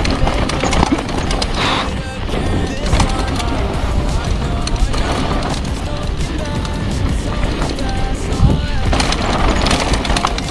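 Mountain bike descending a rough, dry dirt trail, rattling and knocking over the bumps, with wind rumbling on the helmet-camera microphone. Music plays underneath.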